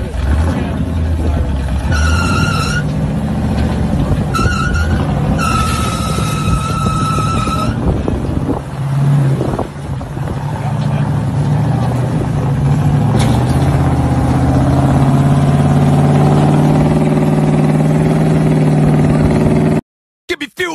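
Lifted Chevrolet square-body pickup's engine working under load as it crawls up a rock ledge, revving up and holding a steady higher note from about nine seconds in. A high whistling squeal comes three times in the first eight seconds.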